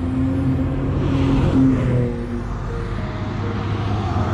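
A road vehicle passing: its noise swells to a peak about a second and a half in and then fades, over a steady low rumble.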